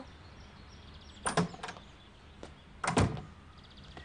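A door being opened and shut: a clunk a little over a second in, and a louder clunk about three seconds in.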